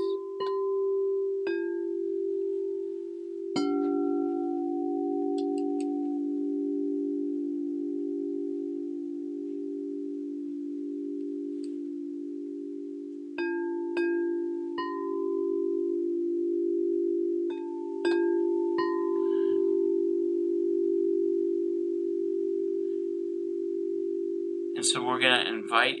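Frosted crystal singing bowls struck with a soft ball-headed mallet, each strike ringing on as a long, steady low hum that pulses slowly. There are three strikes early on and two groups of three strikes in the middle, with the tones overlapping throughout.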